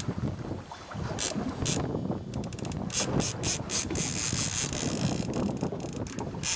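Lever-drag fishing reel's drag buzzing as a hooked halibut takes line: a few short spurts, then a longer steady run from about four seconds in, over wind on the microphone.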